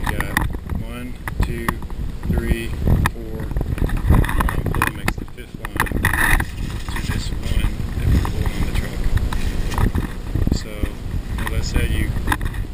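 Steady low rumble of wind and handling noise on the microphone, with scattered light knocks as the rope and pulley rig is handled. A few muffled voice sounds come in the first seconds.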